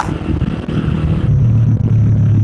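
Modified 120cc Honda C70 single-cylinder four-stroke engine running under way, a steady low drone that grows louder about halfway through.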